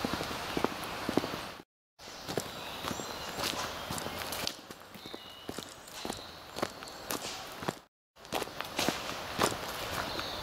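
Footsteps of someone walking along a path outdoors, with a few short bird chirps. The sound cuts out completely twice for a moment.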